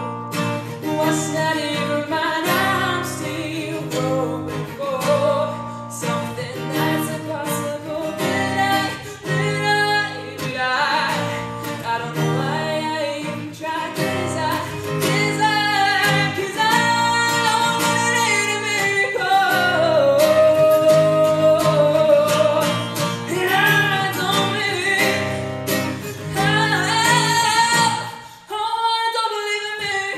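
A woman singing solo with her own acoustic guitar, playing chords under a sustained, rising and falling vocal melody. The music breaks off briefly just before the end, then resumes.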